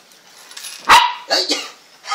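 A dog barking in play: a loud bark about a second in, followed quickly by two shorter ones.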